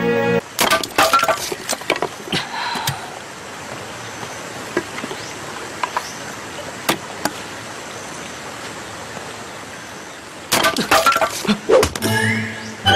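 An axe chopping and splitting firewood on a block: sharp cracks and knocks come in quick clusters near the start and again near the end, with a few single strikes between. A steady rush of a waterfall runs underneath.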